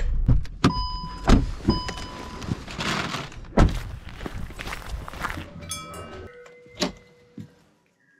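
Car being shut down and left: a string of clicks and knocks with two short electronic chime beeps about one and two seconds in, a loud thunk like a car door shutting a little before halfway, and more clicks and a brief tone near the end.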